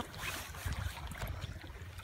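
Wind rumbling on the microphone over a faint, steady hiss of open water.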